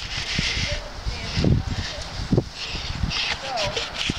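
Indistinct, far-off talking over outdoor background noise, with dull low thumps that are typical of wind buffeting the microphone.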